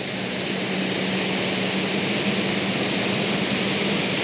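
Rain Bird 5000 rotor sprinkler spraying its water stream: a steady hiss that grows louder over the first second as the head turns its stream to the right, then holds steady. A steady low hum runs underneath.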